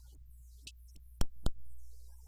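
Two sharp thumps about a quarter of a second apart, the second trailing off briefly, over a steady low electrical hum.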